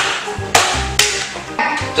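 Background music with a percussive beat: sharp clicks about every half second over low thumps and held notes.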